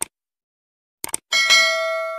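Subscribe-button animation sound effect: a short click, then a quick double click about a second in, followed by a bright bell chime that rings on and slowly fades.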